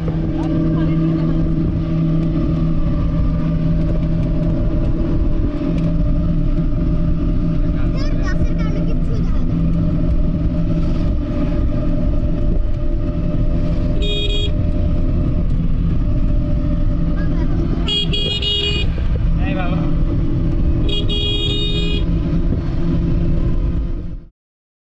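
A vehicle's engine running steadily, heard from on board as it drives. A high-pitched horn sounds three times in the second half, briefly the first time and for about a second each of the other two.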